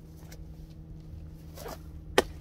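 Clothing rustle and body movement as a man winds up to throw an apple, with a swishing sweep near the end as his arm swings back. A steady low hum runs underneath.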